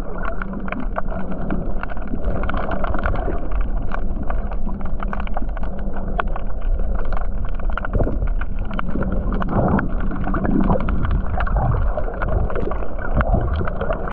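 Muffled underwater noise picked up by a camera held just below the surface: steady water sloshing and gurgling, with many small clicks and crackles throughout.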